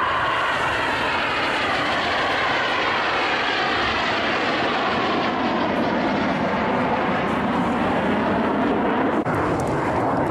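BAE Hawk T1 jet trainer's Adour turbofan engine, a steady loud rush of jet noise with a slowly sliding tone as the aircraft flies past.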